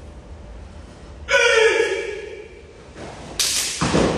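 A karateka's sharp kiai shout about a second in, falling in pitch, followed about two seconds later by a loud noisy swish and thud as he drops to the foam mat.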